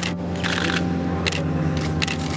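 Three short bursts of camera shutters clicking over a steady, sustained low tone.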